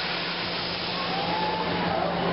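Steady mechanical rushing hiss with a constant low hum from a drop-tower ride's machinery as the rider carriage moves on the tower, with a faint wavering tone rising and falling about a second in.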